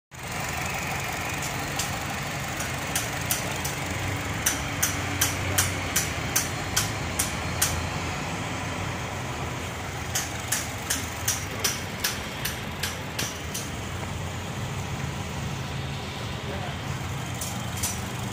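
Car engine idling with a steady low hum, under two runs of sharp, evenly spaced ticks about two and a half a second.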